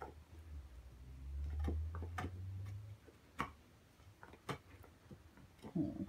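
A dog gnawing on a bone: sparse, sharp clicks of teeth on bone, roughly one a second. A low rumble runs under the first three seconds.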